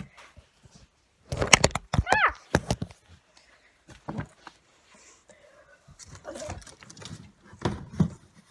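Thumps, knocks and rustling of someone reaching up to a closet shelf for snow boots while holding the camera close. The loudest knocks come about a second and a half in, with a short squeak that bends in pitch just after two seconds, then quieter scattered knocks.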